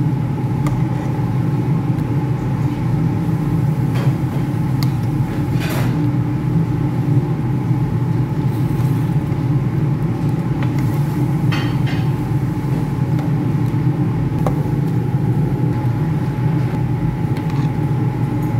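A loud steady low drone with a faint constant hum, from the kitchen where the stew is cooking. A metal ladle stirring the stew scrapes and clicks against the steel pot a few times.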